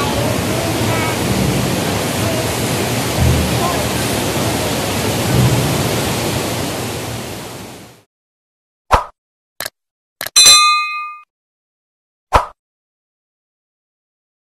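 Steady rush of white-water rapids below a waterfall, fading out about eight seconds in. Then, against dead silence, a few sharp hits and one bright ringing ding from an outro sound effect.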